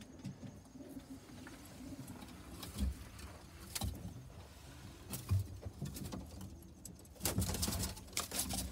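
White Inglizi owl pigeons cooing, low and repeated, with a few short sharp sounds and a louder cluster near the end.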